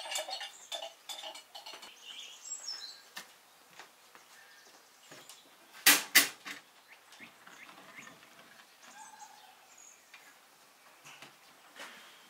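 Kitchenware clinking and knocking as bowls and dishes are handled on a counter, with two loud clanks close together about six seconds in as a dish is set down at a metal stove.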